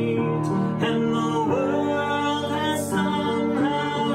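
A young girl singing a song to piano accompaniment.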